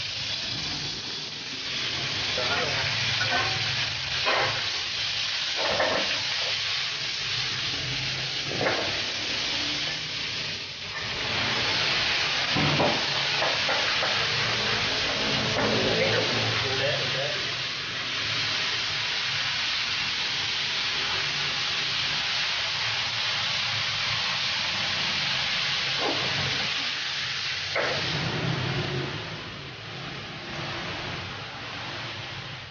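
Beef cubes and diced bell pepper, onion and tomato sizzling as they are stir-fried in a hot pan, giving a steady frying hiss. A few sharp clinks of a utensil against the pan come through it.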